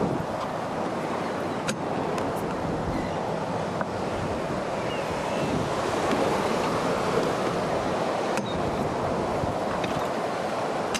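Steady rush of wind on the microphone mixed with moving sea water around a boat, with a couple of faint clicks.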